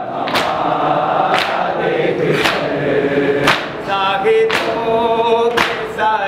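Nauha, a Shia lament for Muharram, chanted by male reciters with a group of mourners joining in. Chest-beating (maatam) keeps time as a sharp slap about once a second, and a lead voice holds a long sung line from about four seconds in.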